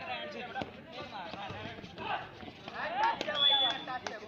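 Players' and spectators' voices calling out during a kabaddi raid, quieter than the commentary, with a brief high steady tone near the end.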